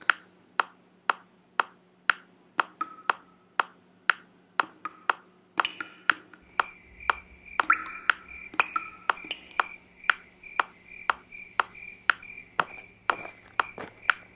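Metronome clicking steadily at about two beats a second. From about eight seconds in, a high, rapidly pulsing tone sounds along with the clicks.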